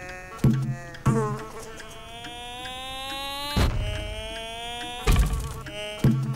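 A trapped flying insect buzzing against a window pane, its buzz rising in pitch through the middle, broken by four sharp thumps.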